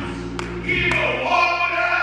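A voice singing drawn-out, bending notes into a microphone over steady held organ chords; the voice pauses for a moment and comes back strongly partway in.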